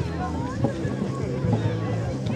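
Several people talking at once, with a steady low hum underneath.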